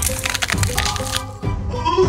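Dry instant noodle block crackling as hands crush it in a steel pot, for about the first second, over background music.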